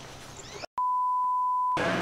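A single steady electronic beep, one pure high tone lasting about a second, starting abruptly after a split-second silence and cutting off just as abruptly. Before it there is light outdoor ambience with a few bird chirps.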